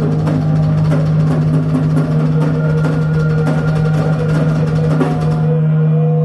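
Drum kit played in quick strokes on snare, toms and cymbals during a soundcheck, stopping about five and a half seconds in, over a steady low hum from the PA.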